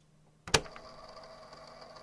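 A single sharp click or tap about half a second in, over faint steady room hum with a few small ticks after it.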